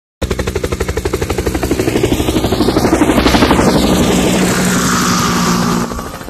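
Intro sound effect for an animated title card: a loud, fast chopping pulse of about ten beats a second that slowly builds. A whooshing sweep passes through it about three seconds in, and it stops just before the end.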